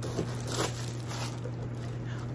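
Tissue paper stuffing crinkling and rustling as it is pulled out of a bag's zipped compartment, in a few short bouts.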